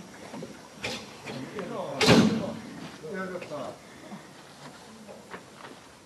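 Faint voices talking, with a sharp knock about a second in and a louder, short bang about two seconds in.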